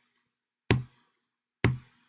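Two sharp clicks about a second apart, with near silence between them: computer clicks advancing a slide animation.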